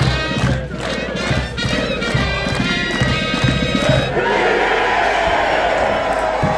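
Music with a steady pounding beat that stops about four seconds in. A loud crowd then takes over, cheering and shouting.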